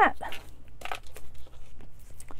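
Handling noises of paper crafting: a few short rustles and knocks as small cardstock pieces and a glue bottle are picked up and moved on a wooden tabletop.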